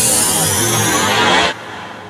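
Short electronic music sting with a dense whooshing noise under a gently falling high tone, cutting off abruptly about a second and a half in and leaving a quieter tail.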